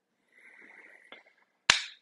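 Near silence broken by a faint murmur, then a single sharp click near the end.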